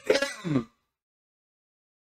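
A person's voice making a short throaty sound, like a throat clearing, whose pitch falls steeply before it cuts off suddenly near the start.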